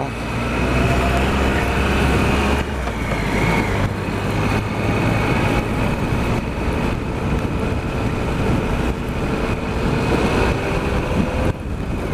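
Triumph Explorer XCa's three-cylinder engine running as the motorcycle rides along a rough grass track: a steady engine note at first, then from about three seconds in a jolting, uneven rumble with wind over the engine.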